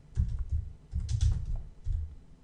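Typing on a computer keyboard: quick runs of keystrokes with a short pause about half a second in, as a short phrase is typed out.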